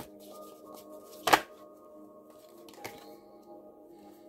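Soft background music of steady, held tones, with one sharp click about a second in and a fainter one near three seconds from tarot cards being handled.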